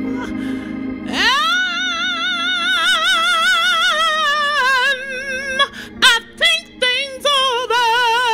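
A woman singing a slow gospel song solo into a microphone. About a second in she scoops up into a long note held with a wide vibrato. A few short clipped notes come near the end before another held vibrato note, over a steady low sustained chord.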